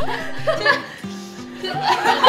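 A young woman laughing uncontrollably, over light background music with a steady stepping bass line.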